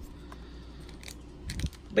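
Faint handling noises of craft supplies and packaging on a table: a few light clicks, and a soft bump with small crinkles about one and a half seconds in.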